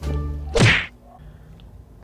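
A single short whoosh-and-whack transition sound effect about half a second in, lasting under half a second, then low room noise.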